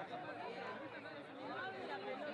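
Several voices talking at once in steady chatter.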